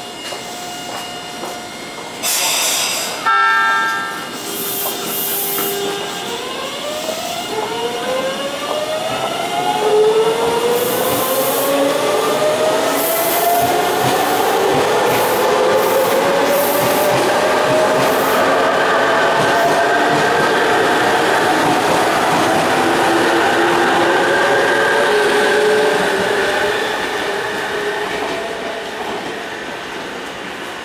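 A Tobu 100 series Spacia electric limited express pulls out. A short, loud signal blast sounds a few seconds in, then the traction inverter and motors give a whine that climbs in pitch in repeated upward sweeps as the train gathers speed, with rail noise under it, and it fades away near the end.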